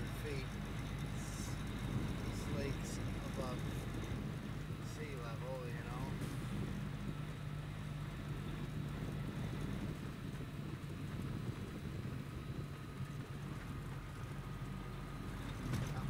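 A truck's diesel engine running steadily, heard from inside the cab while driving, with a low drone and road noise from the tyres.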